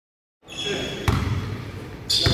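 A basketball bounced once on a wooden sports-hall floor: a single sharp thud with a low boom about a second in.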